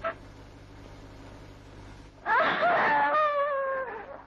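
A young woman crying out in one long, slightly falling wail that starts about two seconds in. It plays over the steady low hum and hiss of an old film soundtrack.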